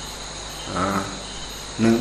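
A steady, high-pitched drone of insects in the background, with a brief spoken syllable about halfway through and a man's speech starting again near the end.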